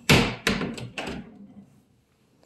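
A loud knock at the start, followed by three or four fainter knocks over the next second, dying away.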